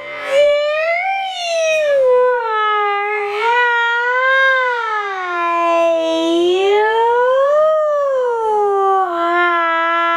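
A person's voice holding one long, wavering, siren-like wail that rises and falls slowly in pitch, made to tease a puppy.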